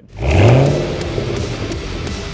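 Title-card transition: a loud whoosh sound effect with a low rev-like swell that peaks about half a second in, running straight into heavy rock guitar music.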